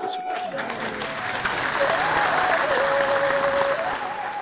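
Theatre audience applauding, swelling about a second in and holding steady.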